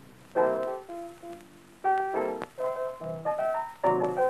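Blues piano playing a short break of struck chords and brief runs, the first loud chord about a third of a second in and another near two seconds, from an early-1930s 78 rpm record.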